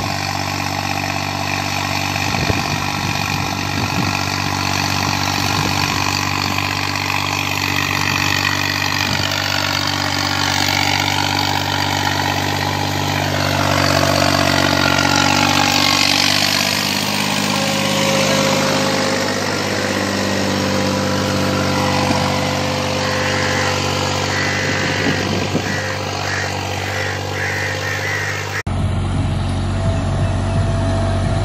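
A 65 hp New Holland 5620 tractor's diesel engine running at a steady speed while it pulls a cultivator through the soil. The sound changes abruptly near the end.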